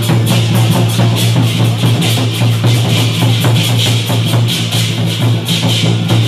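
Lion-dance percussion: a large barrel drum beaten in a fast, steady rhythm with clashing cymbals, loud and unbroken.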